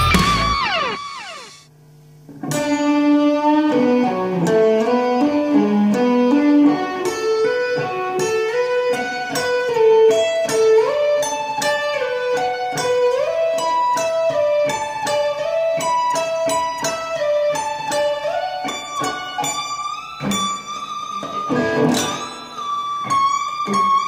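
Ibanez electric guitar playing a fast hybrid-picked arpeggio lick in B minor pentatonic with an added major sixth. The first phrase ends on a falling slide and a short pause about two seconds in. The run of quick single notes then climbs through slides up the neck and settles on a long high note with vibrato and a bend near the end.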